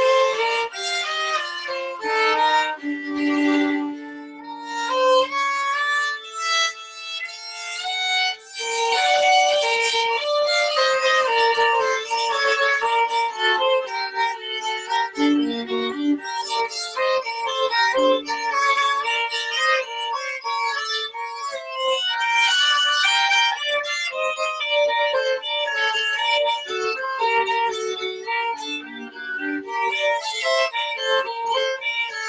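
Two violins playing a duet together, a melody line over a second part, in continuous bowed phrases that dip briefly about eight seconds in and then carry on fuller.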